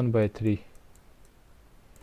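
A man's voice ends a phrase in the first half second. Faint clicks follow, made as figures are handwritten on a screen with a computer pen or mouse.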